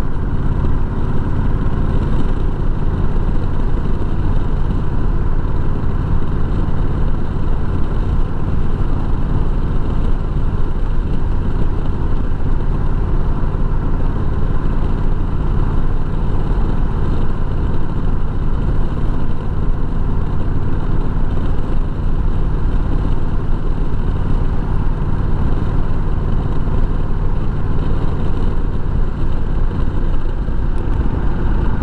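Honda Rebel 1100 DCT's parallel-twin engine running steadily at a cruising speed of about 35 mph, mixed with the rush of wind noise from riding.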